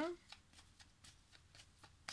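A word of a woman's speech trailing off, then faint, light clicks, about three or four a second.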